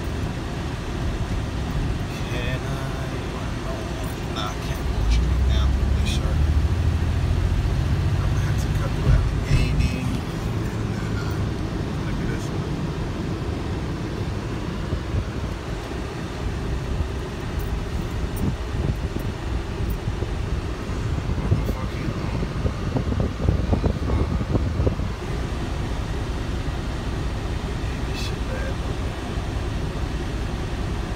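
Car interior noise while driving slowly in city traffic: a steady low engine and road rumble, deeper and louder for a few seconds about five seconds in, with occasional small clicks.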